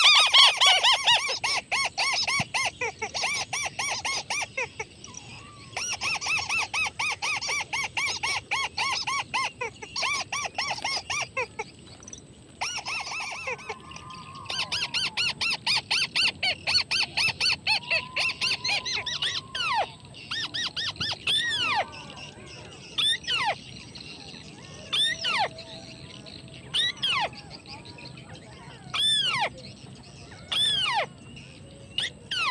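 White-browed crake calls played as a trapping lure. Rapid chattering runs of notes come in bursts of a few seconds, then give way about two-thirds in to single arching notes about every two seconds, over a faint steady high whine.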